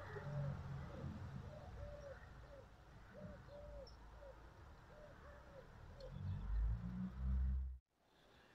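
Faint bird cooing: a quick, uneven series of about a dozen short, soft calls, with a low rumble at the start and again louder near the end.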